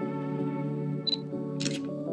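Soft background music with long held tones, over which a camera sounds: a short high focus beep about a second in, then a shutter click shortly before the picture changes.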